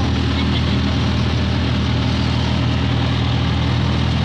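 Steady low engine drone and road noise of a moving vehicle heard from inside the cabin, with wind rushing through an open window.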